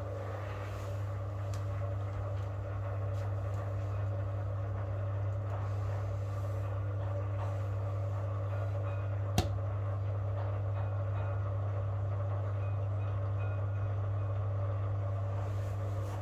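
Beko AquaTech washing machine running with a steady hum, growing slightly louder over the first few seconds. A single sharp click sounds about nine seconds in.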